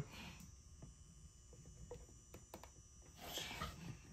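Faint sounds of scented laundry liquid being poured from a plastic bottle into a front-loading washing machine's dispenser drawer: a few soft clicks of the bottle against the plastic drawer and a soft glug about three seconds in.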